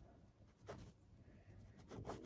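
Faint scratching of a pen tip on paper as a signature is written in short strokes, the clearest a little under a second in.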